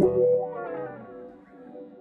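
An electric guitar chord played through a wah-wah pedal, struck once and left ringing, fading away over about two seconds.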